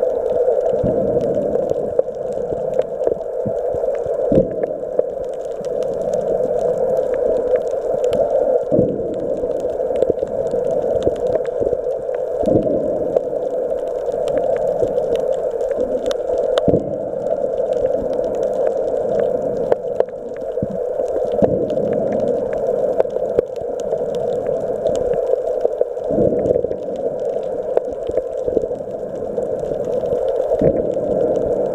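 Underwater sound picked up by a camera's microphone while submerged: a steady muffled rushing with many scattered sharp clicks throughout.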